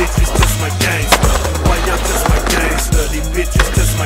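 Skateboard wheels rolling on concrete with sharp board clacks and landings, the loudest about a second in, over a hip hop beat with a deep repeating bass line.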